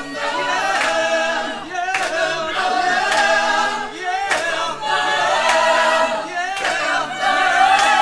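A cappella vocal group singing in close harmony, with a sharp percussive accent marking the beat about once a second.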